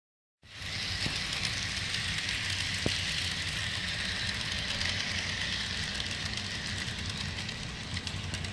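HO-scale model train running past on the track: a steady motor hum and wheel rumble with a higher whirr, and a couple of faint clicks. It starts about half a second in.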